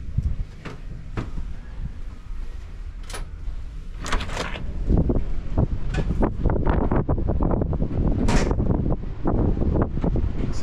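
A few clicks and knocks from a heavy ship's door with a porthole being opened onto an open deck. From about four seconds in, wind rumbles steadily on the microphone outdoors.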